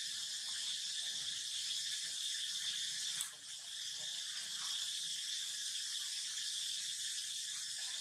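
Steady, high-pitched insect chorus droning without a break, with one brief dip a little over three seconds in.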